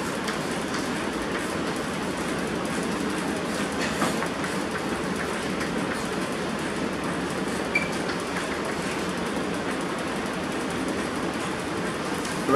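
Chalk tapping and scratching on a blackboard as equations are written, a few faint taps over a steady room noise that is the loudest sound throughout.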